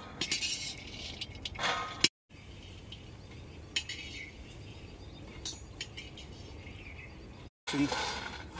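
Dry-roasted peanuts rattling and clinking against a metal plate and an aluminium wok as they are scooped and poured, in a few sharp bursts in the first two seconds. After that only a few scattered clinks over a faint background.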